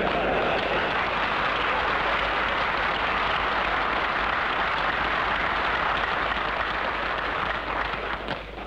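Audience applauding: a sustained, steady clapping that eases a little near the end.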